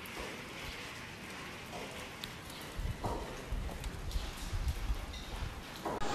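Steady hiss of water, like rain or rushing floodwater, with a few faint ticks. Low rumbling joins in from about three seconds in.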